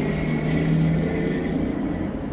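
Steady low hum inside a parked car's cabin, with a faint steady higher tone over it.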